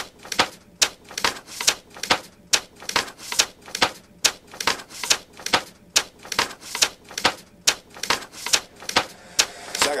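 A sparse section of a trap beat with no bass or kick: a dry, evenly spaced clicking, typewriter-like percussion, about two and a half hits a second.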